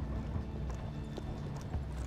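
Horse hooves clip-clopping as a horse-drawn carriage rolls along, over a steady low rumble of wheels.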